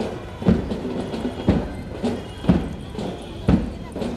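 A drum beating a slow marching rhythm: one strong beat about every second, with a lighter beat between.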